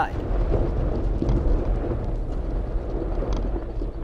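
Ford Ranger pickup moving over a dirt road with its rear wheel locked up, the tyres skidding and scraping over dirt and gravel, over a deep steady rumble.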